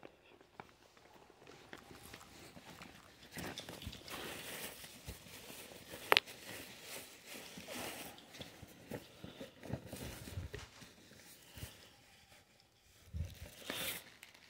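Faint scuffing, rustling and small clicks of someone moving about and handling gear on a gritty concrete floor, with one sharp click about six seconds in.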